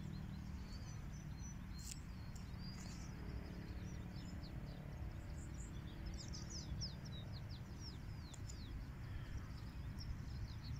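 Small birds chirping throughout in quick, high, falling chirps, busiest a little past halfway, over a steady low background rumble. A couple of faint clicks about two and three seconds in, from tarot cards being handled.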